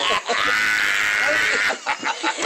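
A man's long, high-pitched shrieking laugh, held as one drawn-out cry for about a second and a half and then breaking off near the end.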